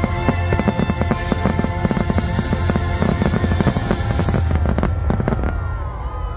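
Fireworks going off in a rapid barrage of crackles and bangs over the show's music, thinning out to a few last pops about five seconds in.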